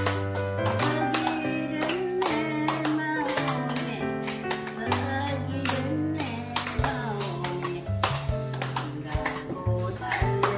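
Upbeat harmonica-group music over a backing track with a steady bass and beat, held melody notes, and people clapping along in time.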